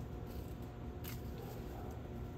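A single short snip of hand pruning shears cutting a stem, about a second in, over a steady low rumble.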